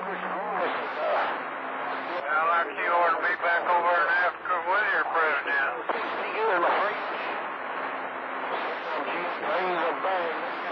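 Men's voices received over a CB radio on distant skip, muffled and unintelligible through the band noise, with the narrow sound of an AM receiver. A low steady tone stops about half a second in.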